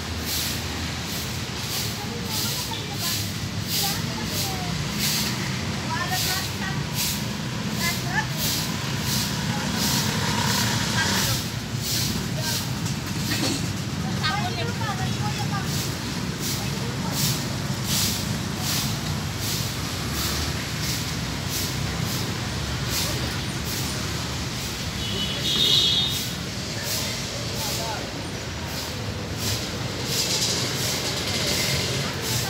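A broom sweeping paving stones in short scratchy strokes, about two a second, over a low steady hum.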